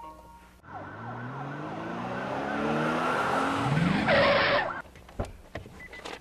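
Car engine revving up, its pitch climbing steadily over about four seconds, ending in a short harsh screech, then one sharp click.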